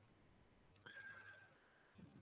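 Near silence: room tone, with a faint thin high tone lasting about half a second around the middle.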